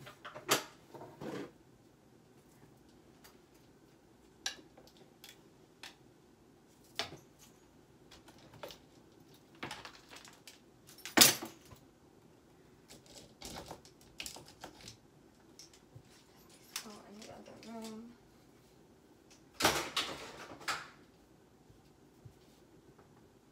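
Clothes hangers and belongings clicking, knocking and rustling as a closet is emptied by hand. Irregular separate clatters, the sharpest about halfway through, and a quick run of them near the end.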